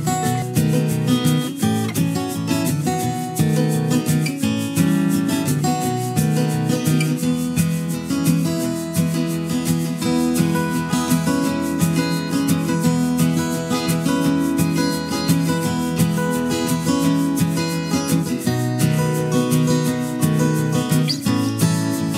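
Background music: a plucked acoustic guitar playing steadily.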